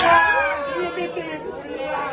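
Chatter: several people's voices talking and calling out over one another, loudest right at the start and then easing off.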